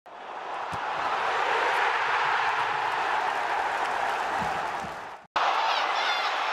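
Football stadium crowd noise with applause, an even roar that swells up over the first second and holds steady before fading out about five seconds in. After a brief silent break, more crowd noise starts.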